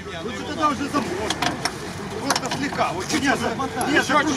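Background chatter of several onlookers talking at once, with a few short sharp clicks or knocks in the middle.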